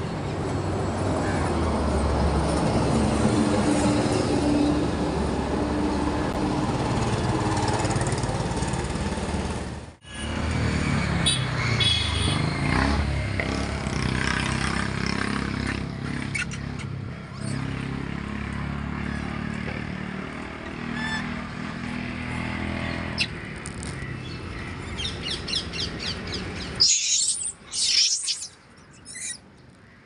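Roadside traffic ambience: vehicles passing steadily on a nearby road. Near the end come a few short, high-pitched chirps, and then the sound falls away sharply.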